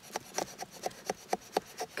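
Mora Outdoor Axe's steel blade shaving thin curls down a wooden stick to make a feather stick: quick, short scraping strokes, about four a second.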